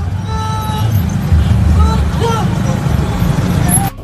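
A man's voice amplified through a handheld microphone, over a loud low rumble; it stops abruptly just before the end.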